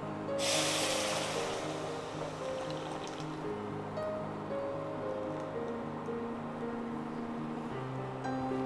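Thick blended soup poured from a bowl into a pan: a splashing hiss starts about half a second in and fades over the next two seconds or so, heard over background music.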